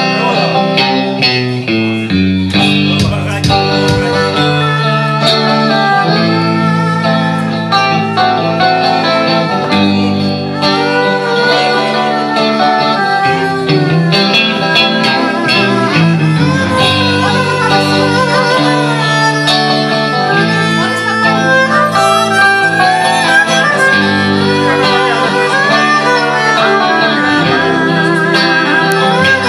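Live band playing an instrumental passage: a bowed violin carries a sliding melody over electric guitar, bass and drums.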